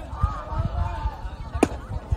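Background voices of players and spectators calling out across an open ballfield, with a single sharp click about a second and a half in.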